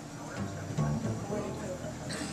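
Acoustic guitar and plucked upright bass playing a short passage of music, the low bass notes coming in about half a second in.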